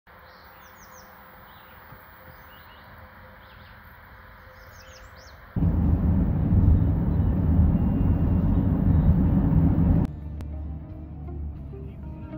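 Small birds chirping in quick high runs over faint outdoor ambience. Then loud, dense road and wind rumble from inside a vehicle at highway speed starts suddenly, until it cuts off and plucked-string music begins near the end.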